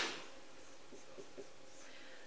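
Faint strokes of a marker writing on a whiteboard, a few soft scratches in the second half.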